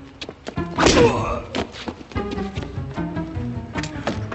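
Dramatic film score with steady notes and repeated sharp percussive hits, and a loud thud about a second in: a staged fight impact.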